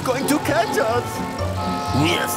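Cartoon soundtrack: background music under wordless, pitch-gliding vocal sounds, with a car sound effect.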